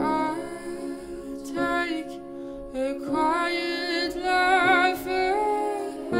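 A woman singing softly over piano accompaniment, with a held note that wavers with vibrato near the end.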